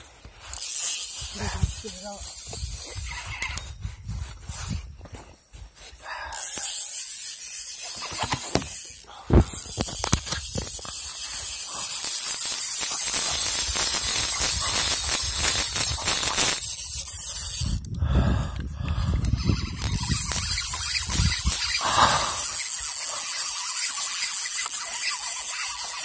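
Handling noise from a phone microphone rubbing against a cap brim and clothing: rough rustling hiss broken by knocks, with one sharp knock about nine seconds in and louder rubbing from about twelve seconds on.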